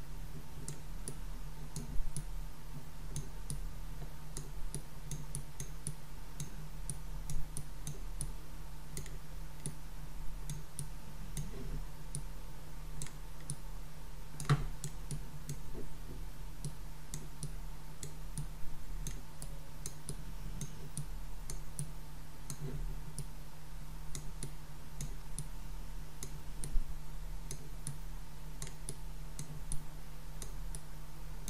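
Irregular light clicks and taps of a stylus on a tablet screen as numbers are handwritten, with a few louder knocks now and then. A steady low electrical hum with a faint high tone runs underneath.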